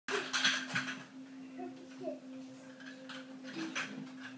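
Children playing on a wooden floor: quick footsteps and small knocks and clatters, loudest in the first second and again near the end, with brief faint child vocal sounds, over a steady low hum.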